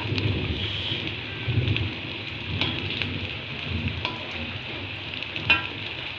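Tempeh slices sizzling as they fry in hot oil in a wok, with a few light clicks of a metal spatula against the pan as they are turned.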